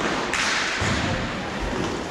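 Thuds and taps of inline hockey play: sticks, puck and skates striking the rink floor and boards.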